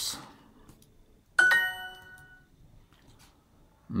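Language-learning app's correct-answer chime: a bright electronic ding of several tones together, starting sharply about a second in and ringing out over about a second, marking the selected answer as right.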